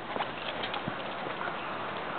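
A few light knocks in the first second as a climber's shoes and legs bump metal playground monkey bars, then a steady hiss.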